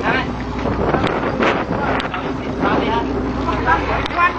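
Indistinct men's voices over wind buffeting the microphone, with a steady low rumble underneath.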